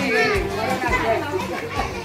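Children's voices calling and chattering at play, with a high call about a quarter of a second in.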